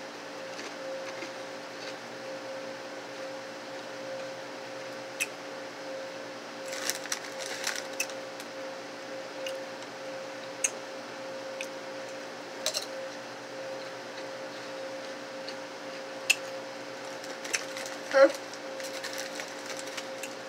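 Doritos Tangy Ranch tortilla chips being bitten and chewed: a scattered handful of short crisp crunches, one louder near the end, over a steady low hum.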